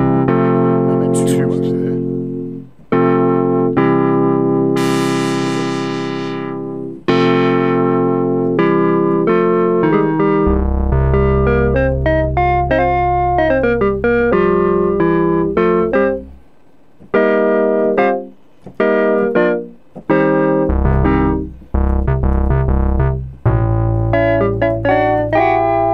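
Roland Boutique JU-06 synthesizer, a Juno-106-style polysynth, playing a preset patch as held chords of one to three seconds each, then shorter, choppier chords in the second half. A low sub-oscillator bass sounds under some of the chords.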